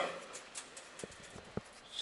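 Quiet workshop room tone with a few faint, short clicks as fingers pick at loose steel turnings left by boring.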